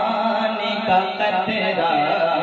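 A man's voice chanting a line of naat (devotional Urdu verse) in a held, drawn-out melody, without accompaniment.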